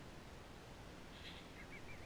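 Quiet open-air background with a faint bird call in the second half: a brief high note, then a high wavering note repeated several times.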